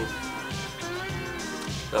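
Mobile phone ringing with a melodic ringtone, wavering high notes, over steady background music.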